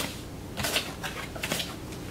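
Playing cards being dealt onto a felt blackjack table: three short swishes of cards sliding, one at the start, one about two-thirds of a second in and one about a second and a half in.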